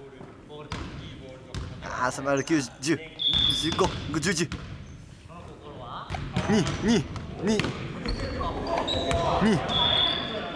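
A person's voice making sing-song repeated syllables that swoop up and down in pitch, in two bursts, with scattered light knocks. A brief high beep sounds about three seconds in and again near the end.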